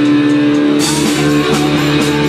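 Live rock band playing loud, led by guitar, with a crash about a second in.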